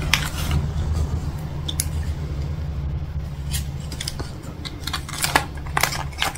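Gold foil wrapper of a candy cone crinkling in the hands as it is turned over, in a handful of short crackles, over a steady low hum.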